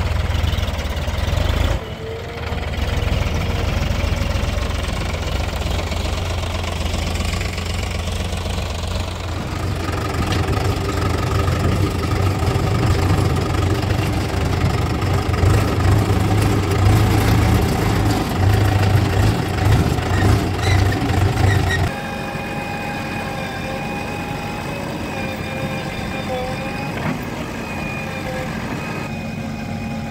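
Diesel tractor and JCB 3DX backhoe loader engines running in a steady low drone, with a brief break about two seconds in. About 22 seconds in it switches abruptly to a quieter, even engine sound with a steady high tone over it.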